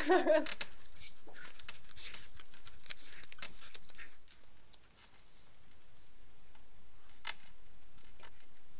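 A wolverine's claws scratching and clicking on a wooden run pole and tree bark as it climbs and tugs at hanging bait: an irregular crackle of small scrapes and clicks. It drops off briefly about four seconds in, then carries on more quietly with one sharper click near the end.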